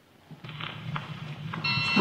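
Opening of a film trailer's soundtrack played through a hall's speakers. A low hum starts about half a second in and grows louder, and a cluster of steady high tones joins after about a second and a half.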